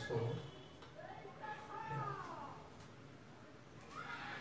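Faint voices, with a high, arching pitched call about a second in.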